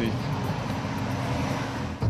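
Steady city traffic noise, an even hiss of passing cars, that cuts off suddenly at the end.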